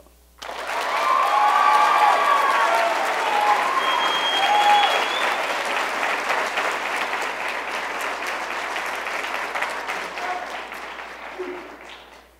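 Audience clapping and cheering, with whoops and shouts in the first few seconds and a short high whistle about four seconds in. The applause starts suddenly and then slowly dies away near the end.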